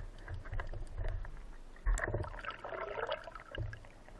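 Muffled underwater sound picked up through a camera housing: low rumbling and thumps of water moved by a diver's motion, a sharp click about two seconds in, then about a second of hissing.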